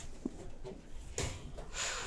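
Faint rubbing and scraping as a metal cake pan is slid off an oven rack with a cloth kitchen towel, with two short scrapes in the second half.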